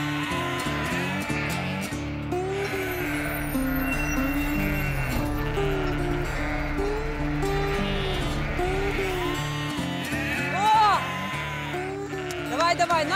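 Background music with a repeating melody, and a flock of Lacaune dairy sheep bleating over it, the loudest bleats near the end.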